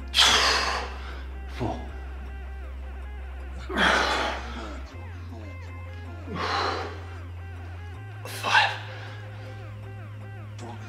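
A man's hard, forceful breaths under the strain of repeated Hindu push-ups, four strong ones a couple of seconds apart, the first the loudest, over background music with a steady bass.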